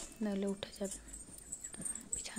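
A person's voice in one short phrase within the first second, on held, even pitches, followed by quiet.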